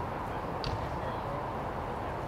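Steady low background noise of an outdoor scene, with one brief faint high sound just under a second in.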